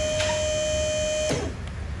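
Battery-powered electric hydraulic pump running with a steady whine, pushing a gravity tilt cylinder out under pressure. It cuts off suddenly a little over a second in.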